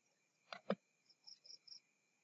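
Two short, soft computer-mouse clicks about a sixth of a second apart, half a second in, over a faint steady high-pitched electronic whine.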